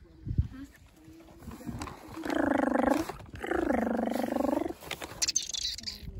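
A person's voice making two drawn-out, rough-textured vocal sounds, each about a second long, with a short pause between. A short low thump comes about half a second in.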